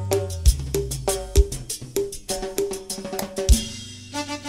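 Latin dance band music in a passage carried by drums and percussion: rapid strikes, a few heavy low hits and a short repeated pitched figure, growing quieter toward the end.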